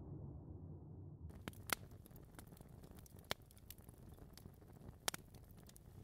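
A faint low rumble that cuts off suddenly about a second in, then faint hiss with a few scattered sharp clicks.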